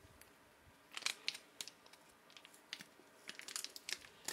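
Faint crinkling and rustling of an MRE food pouch being handled as the beef patty is worked out of it. The sound comes in short scattered bursts, loudest about a second in and again near the end.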